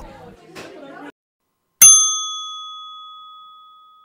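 A small bell struck once, just under two seconds in: a single bright ding whose tone rings on and fades away over about two seconds. Before it, faint pub chatter is heard briefly and then cuts off.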